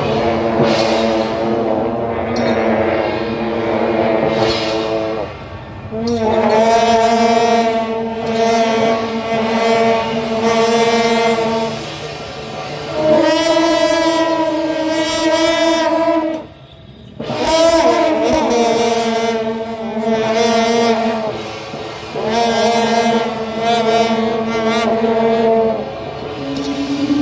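Shaojiao, the long brass processional horns of a temple horn troupe, blowing a series of long held blasts, each lasting several seconds with short breaks between them.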